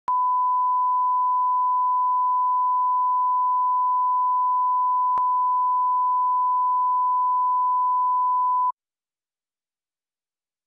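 Steady 1 kHz line-up tone from a BBC tape's countdown clock, one unbroken pure pitch that cuts off suddenly near the end.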